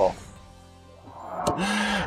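A short musical transition sting: a voice cuts off, faint held tones follow, then a whoosh swells in over the second half with a click near the end.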